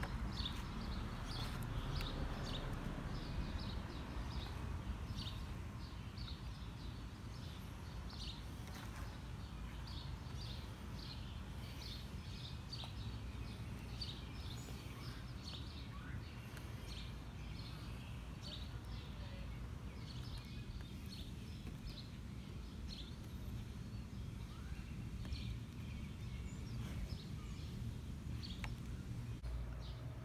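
Small birds chirping repeatedly, in short high calls that are most frequent in the first half, over a low steady outdoor rumble.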